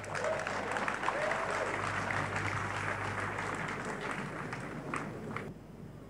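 A church congregation applauding, with a few voices mixed in, dying away about a second before the end.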